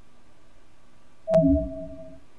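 A short computer alert chime about a second and a half in: a click, then a steady tone held for under a second, sounding as the PluralEyes sync finishes.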